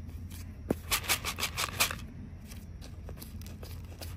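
Chicken feed pellets clicking and rattling against the plastic tray of a hanging feeder as fingers stir through them, working caked feed loose so it flows down. A quick run of clicks comes in the first two seconds, then a few fainter ticks.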